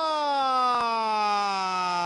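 Spanish-language football commentator's long held shout: one drawn-out vowel, slowly falling in pitch, as a goalkeeper saves a shot.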